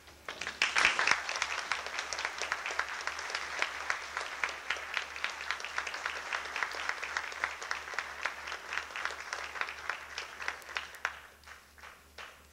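Audience applause: dense clapping breaks out about half a second in, is loudest just after, and thins to a few scattered claps near the end.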